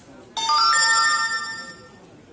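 An electronic chime of several steady ringing tones that starts abruptly about a third of a second in, much louder than the surrounding room sound, holds for about a second and then fades away.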